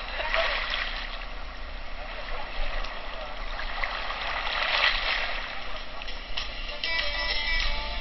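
Water splashing and sloshing at the sea's surface while snorkelling, as a steady, noisy wash. Music comes in near the end.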